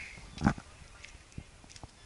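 A single sharp knock about half a second in, followed by a few faint ticks.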